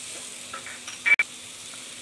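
Chopped onion, ginger and garlic frying in oil in an aluminium kadai, stirred with a wooden spatula: a soft, steady sizzle with scraping. A brief, sharp click about a second in.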